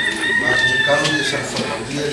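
A rooster crowing once: one long drawn-out call that sags slightly in pitch at the end, over a voice speaking.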